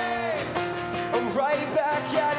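Two acoustic guitars strummed in a live acoustic rock song, with a held sung note that falls away early on and more singing over the chords.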